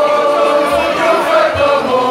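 A group of voices singing together in chorus, several overlapping melodic lines held through the whole stretch.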